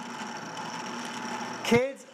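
Kitchen HQ soft-serve ice cream maker's motor running steadily, turning the paddle in the chilled bowl as it churns the ice cream base. A voice cuts in briefly near the end.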